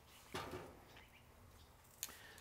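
Near silence: a faint steady background hiss, with one brief soft sound about a third of a second in.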